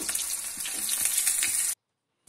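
Halved bitter gourds (karela) shallow-frying in hot oil in a nonstick pan, sizzling steadily with scattered crackles as a slotted metal spoon turns them. The sound cuts off abruptly near the end.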